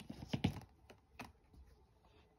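Tarot cards being handled: a handful of light clicks and taps of card stock against card and fingers, the sharpest about half a second in, then a few fainter ones.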